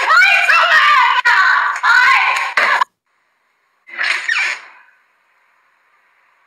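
A woman shrieking loudly in a high, wavering voice, stopping abruptly about three seconds in. A shorter loud burst of sound follows about a second later.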